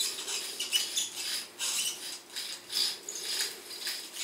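Lizard Red Gun baitcasting reel being cranked by hand, winding braided multifilament line tightly onto its spool: a scratchy, whirring mechanical sound that pulses about two to three times a second with each turn of the handle.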